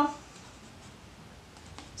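Faint scraping of a plastic grooming-product tub being handled and opened by hand, with a single soft click near the end.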